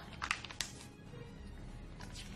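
A sketchbook page turned by hand: a brief crisp paper rustle in the first second, over faint background music.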